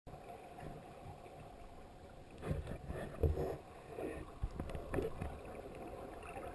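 Underwater sound picked up by an action camera in its waterproof housing: a muffled, steady rumble of moving water, with irregular louder swells and a few short knocks between about two and a half and five seconds in.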